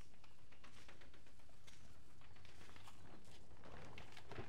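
Hands digging and scooping loose potting soil in a plastic pot, a faint scattered rustling over a steady low background hum.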